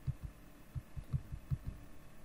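A quick, irregular run of dull, low thumps, about five a second: keys or a mouse button pressed repeatedly to page fast through slides, picked up through the desk.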